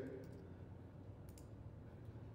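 Two faint clicks in quick succession about a second and a half in, from a computer mouse, over a low steady room hum.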